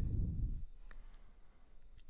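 A few faint, sparse clicks from a computer pointing device, over low background noise, with a low rumble dying away in the first half second.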